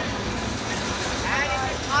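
A heritage passenger train rolling past close by: a steady rumble of carriage wheels on the rails.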